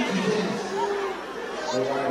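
Indistinct chatter: several people talking at once, with no single clear voice.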